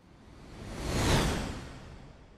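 A whoosh sound effect: a rushing swell of noise that builds to a peak about a second in, then fades away.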